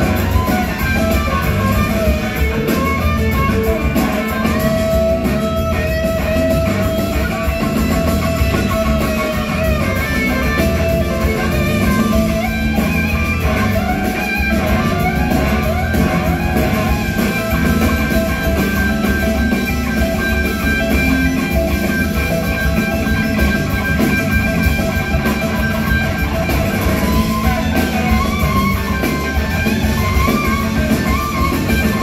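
A blues-rock band playing live in a concert hall, with electric guitar lines held and bent over a steady drum kit and bass. It is heard from the audience, so the whole band comes through as one loud, continuous mix.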